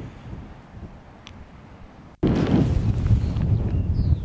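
Wind rumbling on the microphone, low and fairly quiet at first, then cutting in much louder at an abrupt edit about two seconds in. A few faint high chirps are heard near the end.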